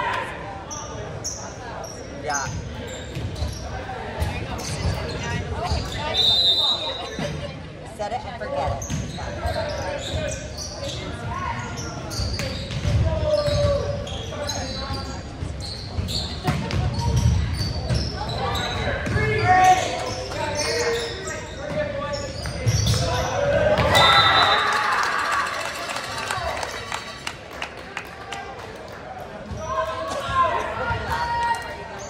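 Indoor volleyball rally in a reverberant gymnasium: the ball is struck repeatedly with echoing knocks, and players call out over background chatter. Two short, high whistle blasts sound, one about six seconds in and one about two-thirds of the way through. The second is followed by a burst of shouting.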